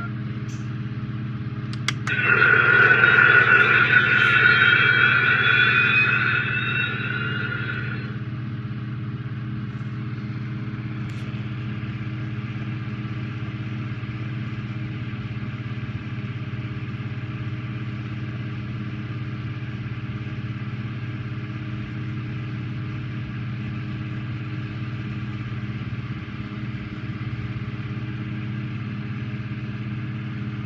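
Built-in sound effects of a Space: 1999 Eagle launch pad model playing through its speaker: a steady low electronic hum, with a loud high tone and rising whine from about two seconds in that fades and cuts off at about eight seconds.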